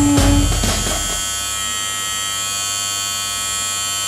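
Corded electric hair clippers running with a steady, even buzz. Drum-heavy music plays over them for about the first second, then stops.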